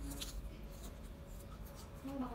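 A small child chewing apple: faint, scattered crisp clicks and scratchy rustles.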